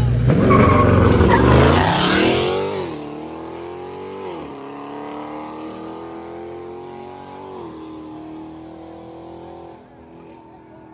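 A car and a pickup truck launch hard from a standing start side by side, engines revving up steeply with a burst of tyre squeal. They then accelerate away into the distance, the engine note fading, with two upshifts heard as dips and fresh climbs in pitch, about four and eight seconds in.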